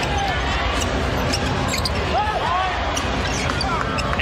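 Basketball bouncing on a hardwood court during live play, over steady arena crowd noise, with a few brief squeaks about two seconds in.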